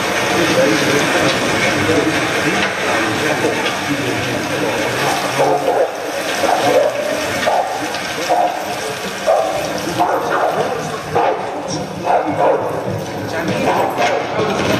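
Indistinct voices over a dense rushing noise. From about five seconds in, short mid-pitched sounds recur roughly once a second.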